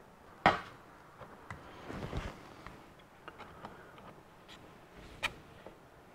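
Light knocks and clicks from a plastic-welding iron and plastic stock being worked against a flexible plastic bumper cover, with a sharper knock about half a second in and another a little after five seconds.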